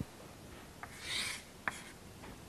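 Chalk scraping on a chalkboard as a curve is drawn: one short, faint scratchy stroke about a second in, between two light taps of the chalk on the board.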